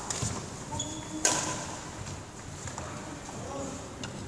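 A badminton racket strikes a shuttlecock once, a single sharp crack about a second in that rings briefly in the hall. Faint voices are heard in the background.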